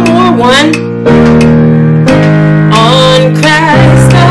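Gospel worship song in E-flat at about 89 BPM playing: sustained accompaniment chords change about every second, with a voice singing the melody over them.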